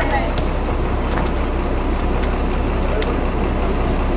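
Party bus engine idling steadily with a low rumble, with scattered voices of people talking over it.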